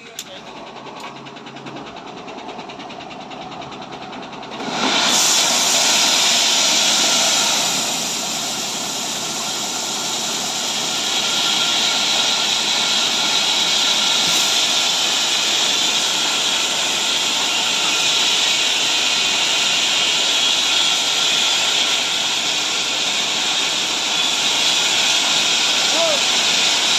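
Tipper truck running with a loud, steady hissing rush as its body tips up to dump gravel. The rush starts suddenly about five seconds in, after a quieter stretch.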